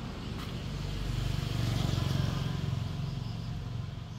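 A motor vehicle going past: a low engine rumble that swells to its loudest about two seconds in, then fades away.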